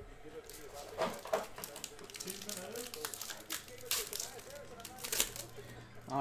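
Plastic card packaging crinkling and cards being handled, in several short crackles, with faint voices underneath.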